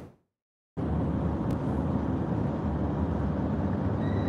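Steady road and engine noise inside a moving vehicle's cabin. It cuts in abruptly just under a second in, after a moment of dead silence.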